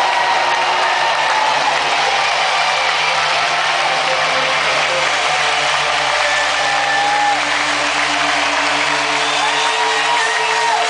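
Live rock band's amplified electric guitars and bass holding a loud, steady distorted drone in a large arena, with no beat, as a song is drawn out at its end. Crowd shouts and whoops rise and fall over it, and the low bass drone cuts off near the end.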